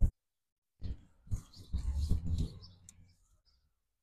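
Large folding solar panel being handled and shifted into position: a short knock at the start, then about two seconds of bumping and rubbing noises that die away.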